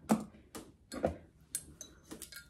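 A few light taps and knocks, about five spread over two seconds, as a cauldron-shaped mug holding folded paper slips is picked up from the table and handled.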